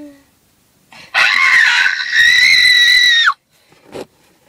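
A girl's shrill, high-pitched scream, starting about a second in and lasting about two seconds: rough at first, then a held note that drops in pitch as it suddenly cuts off.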